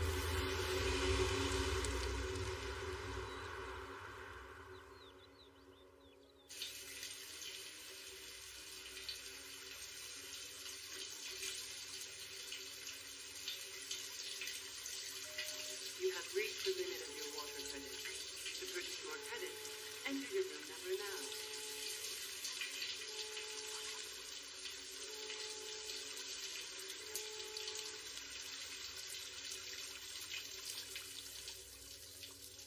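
Film score fading out over the first few seconds, then a sudden cut to a shower running steadily. Faint, short pitched tones sound over the water through the middle stretch.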